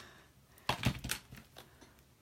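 A quick run of small clicks and taps, most of them about a second in, from a stamp and ink pad being handled.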